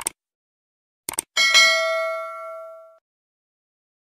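Subscribe-button sound effect: a short mouse click, then a quick double click about a second in, followed by a bright bell ding that rings out and fades over about a second and a half.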